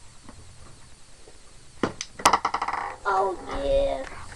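Small pool balls on a mini pool table: a sharp cue strike about two seconds in, then a quick clatter of clicks as the racked balls scatter on the break.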